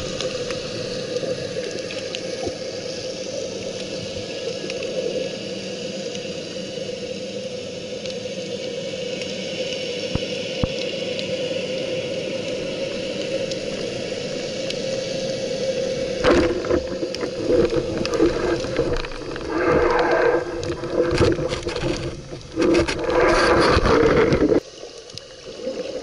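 Underwater sound muffled through an action camera's waterproof housing: a steady hiss with a held hum. About two-thirds of the way in, louder irregular rushing and scraping sounds start and come and go, as the diver and gear move through the water.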